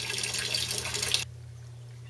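Water running from a half-inch PVC return line into an aquaponics fish tank, a steady splashing that cuts off suddenly just over a second in. A low steady hum is left behind.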